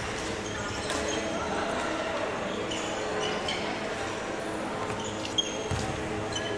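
Sports shoes squeaking and footfalls thudding on a wooden court floor as a badminton player moves about: many short high squeaks and scattered thuds, with one sharp knock a little past five seconds in. Voices murmur underneath in a reverberant hall.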